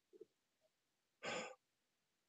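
A pause in a man's speech, broken a little over a second in by one short breathy vocal sound, a sigh or breath, against near silence.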